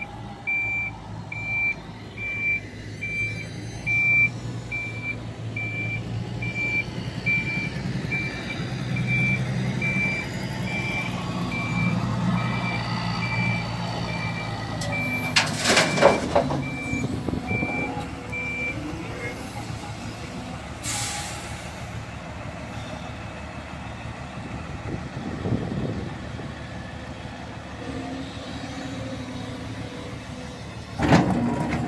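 A dump truck's diesel engine is running while its reversing alarm beeps about twice a second; the beeping stops a little past halfway. About halfway through, a loud crash of soil and rock pours from an excavator bucket into the truck's steel bed, and a shorter crash follows about five seconds later.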